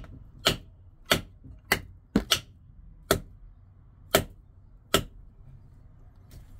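The spine of an opened SITIVIEN ST-143 liner-lock folding knife being struck against a wooden stick in a lock test: eight sharp knocks at uneven intervals, one of them a quick double about two seconds in. The liner lock holds and the blade does not close.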